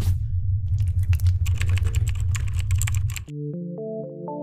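A rapid clatter of sharp clicks over a steady low rumble. About three seconds in it cuts off and gives way to music: a rising run of single synth or keyboard notes.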